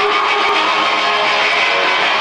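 Live rock music dominated by distorted electric guitar, heard loud through an arena PA.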